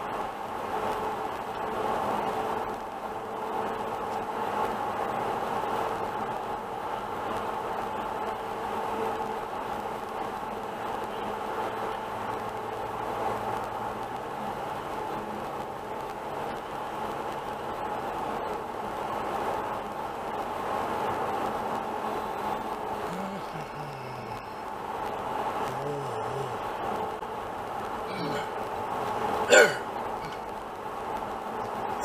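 Steady road and engine noise inside a car cruising on a highway, picked up by a dashcam microphone. A single sharp click sounds near the end.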